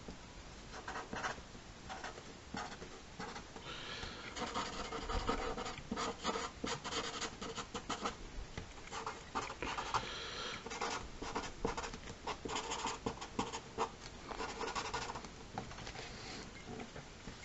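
Sharpie marker rubbing across paper in short, irregular scratchy strokes, laying in dark shading.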